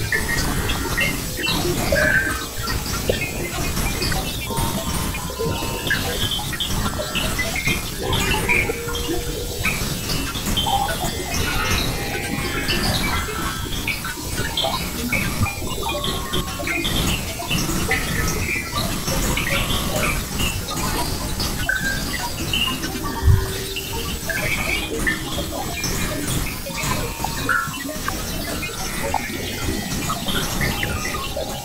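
Experimental noise and glitch music: a dense, crackling bed of noise, heaviest in the low end, scattered with many short squeaky tonal blips. A single brief low thump stands out about two thirds of the way through.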